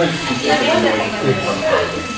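Several people talking at once in a room, overlapping conversation with no single clear speaker.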